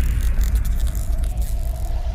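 Sound effect of an animated logo intro: a deep, steady rumble with a crackle of sparks over it in the first second and a faint held tone.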